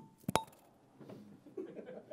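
Handling noise on the presenter's wireless microphone: two sharp knocks close together, then faint rustling and small ticks as the mic is fumbled.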